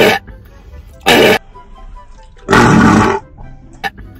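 Three loud, breathy bursts of laughter: a short one at the start, another about a second in, and a longer one about two and a half seconds in.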